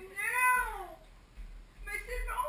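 A high-pitched squeal of excitement, one cry rising and then falling in pitch over about a second, with more excited voices starting near the end.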